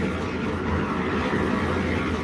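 A 150-litre concrete mixer running steadily: a constant low hum under an even rushing noise.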